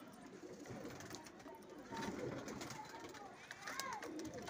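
Faint cooing of Saharanpuri pigeons, with a brief higher chirp-like call near the end.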